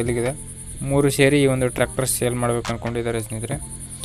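A man talking, with a steady high-pitched pulsing chirr of crickets behind him.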